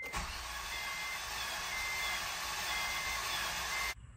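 The 2006 Acura RSX's 2.0-litre four-cylinder being cranked over on the starter with its spark plugs out for a compression test, a steady run that stops abruptly near the end. A cabin warning chime beeps about once a second over it.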